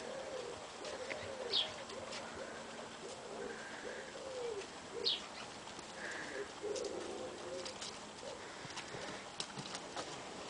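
Faint, repeated low cooing bird calls with an arched rise and fall in pitch, carrying on through most of the stretch, with two brief high chirps.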